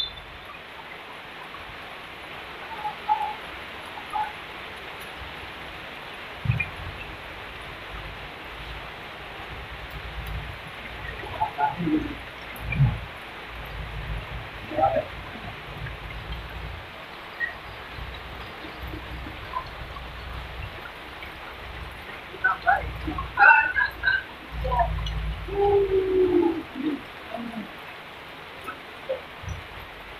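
Steady rain hiss, with wind rumbling on the microphone at times and scattered short distant calls, a few louder ones clustered near the end.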